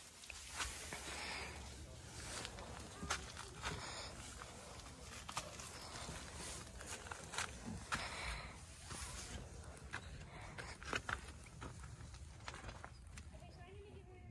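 Quiet outdoor ambience: faint distant voices now and then, with scattered soft clicks and knocks.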